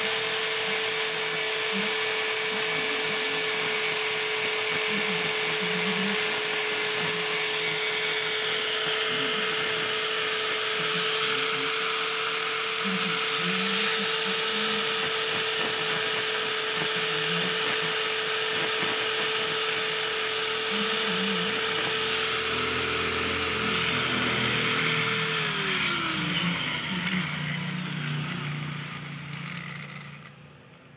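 Electric angle grinder running steadily, its disc working against a stainless steel wire. About 25 seconds in it is switched off and its whine falls away as the disc spins down.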